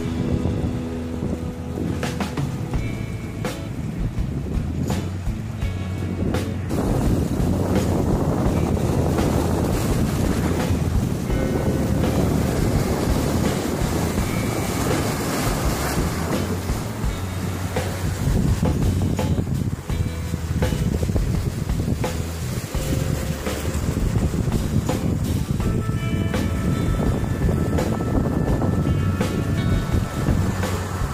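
Ocean surf washing and surging among shoreline rocks, with wind buffeting the microphone, heard under background music. The water and wind noise swells up a few seconds in and stays loud, while the music is clearest at the start and near the end.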